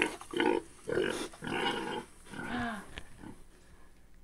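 Recorded pig sound effect: a run of short grunts and oinks, one sliding down in pitch about two and a half seconds in.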